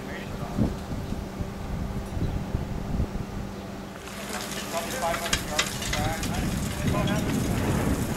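Outdoor ambience with wind on the microphone over a steady low hum. About halfway through the sound cuts to a wider hiss with faint distant voices and a few sharp clicks.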